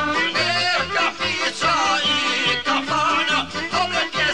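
Bosnian izvorna folk music: a wavering, heavily ornamented melody line over a steady rhythmic accompaniment with a pulsing bass.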